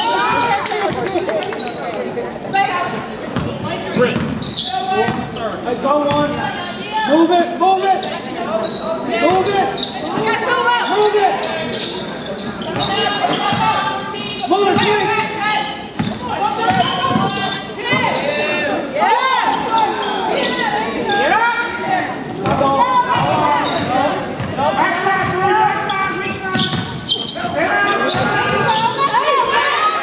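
A basketball bouncing on a hardwood gym floor during live play, with repeated sharp knocks, under voices calling out across the court throughout.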